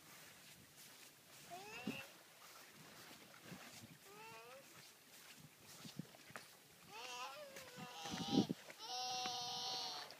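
A toddler's high, whiny vocal calls: a few short rising-and-falling cries, then a longer held wail near the end, which is the loudest part.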